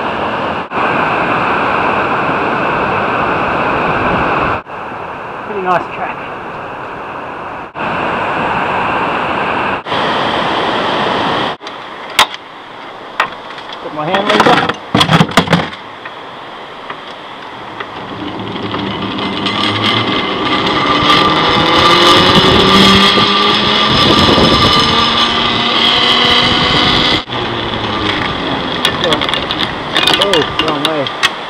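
Rushing river water, broken by several abrupt cuts; then a few knocks, and from about halfway the pulleys of a hand-hauled river cable car running along their wire rope, squealing in several shifting pitches, some rising, louder than the river and loudest in the second half.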